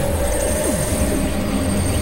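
Experimental synthesizer drone music: a sustained tone over a steady low rumble, with a few short tones gliding downward in pitch.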